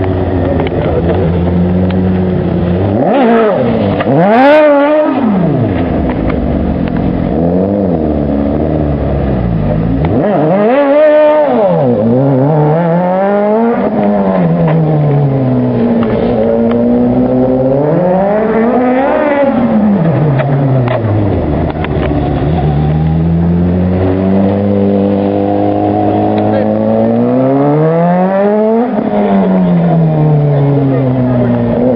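Race-prepared classic Mini's engine revving hard and dropping back again and again as the car is thrown around, with about five high revs.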